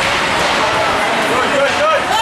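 Crowd noise in an ice rink: a steady hubbub of talk, with a few high voices calling out near the end.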